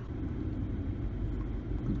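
Steady low rumble of a car heard from inside the cabin.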